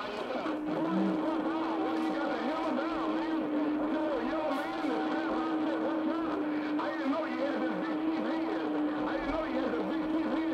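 CB radio channel 6 (27.025 MHz) AM skip heard through a shortwave receiver: several distant stations talk over one another in garbled, distorted speech. A steady low heterodyne whistle comes in about half a second in and runs under the voices.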